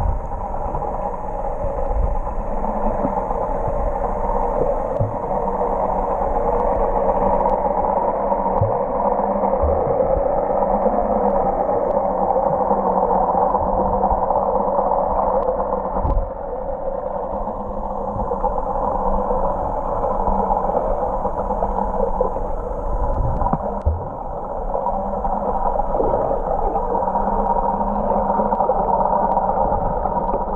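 Muffled underwater sound recorded through an action camera's waterproof housing: a steady, dense rush of water with a faint low hum and a few soft knocks.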